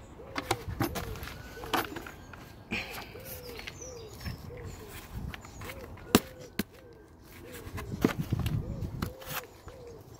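Compost mix tipping out of a plastic tub into a wheelbarrow, with scattered knocks as the tub is tapped against the barrow, the sharpest about six seconds in, and gloved hands working the mix near the end. Behind it a bird repeats a short low call about twice a second.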